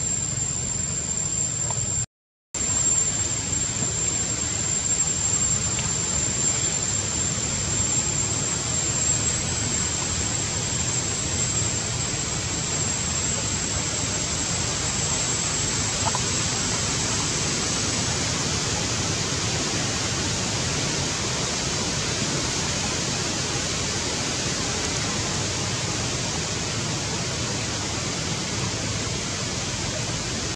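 Steady rushing, hiss-like outdoor noise, with a thin high-pitched whine over it that fades out about two thirds of the way through. The sound cuts out completely for a moment about two seconds in.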